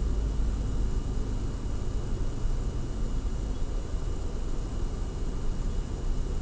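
Steady low hum with a faint hiss: background room noise, even and unchanging, with no distinct events.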